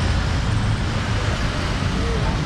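Steady city street traffic noise: a continuous low rumble of vehicle engines on the road.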